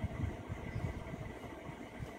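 Low, uneven background rumble with a faint steady high tone: room noise like a fan or distant engine running.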